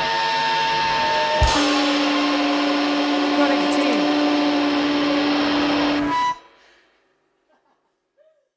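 Punk band's final held chord: electric guitars and bass ringing out with long sustained tones and one cymbal-and-drum hit about a second and a half in. The whole thing cuts off abruptly about six seconds in.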